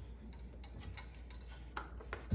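Faint, irregular light clicks of a hard plastic RC truck body and crawler chassis being handled, over a steady low hum.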